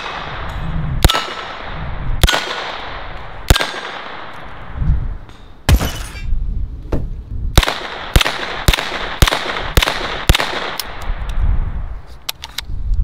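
Uzi 9mm short-barrelled rifle fired in single shots at small steel animal targets, each shot sharp with an echo trailing off. Four well-spaced shots over the first six seconds, then six quicker shots about half a second apart.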